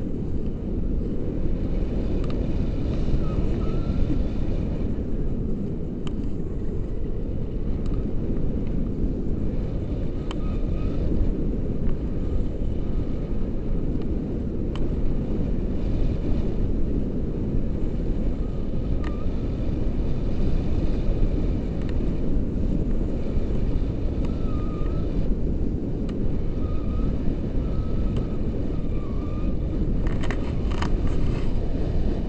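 Steady wind rush and low buffeting on the camera microphone from the airflow of a tandem paraglider in flight.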